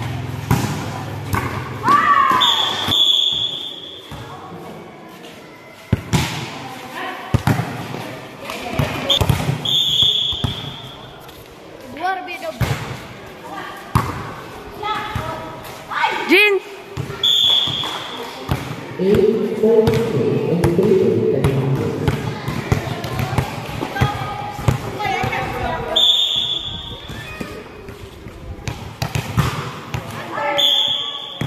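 Volleyball being played on a concrete court: the ball is repeatedly struck and thuds on the floor amid shoes and movement, with players calling out and shouting over it.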